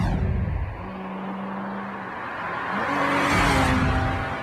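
A Volkswagen Golf GTI speeding past, its engine cutting in suddenly loud. The engine note holds steady, then rises in pitch about two and a half seconds in, and the sound swells loudest near the end as the car passes.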